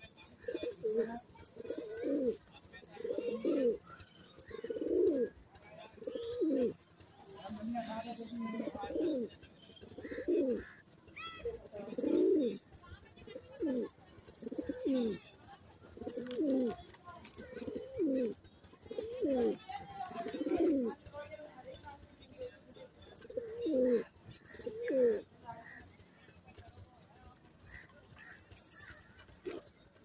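Domestic pigeons cooing: a long string of low, repeated coos, about one every second or so, that stops a few seconds before the end.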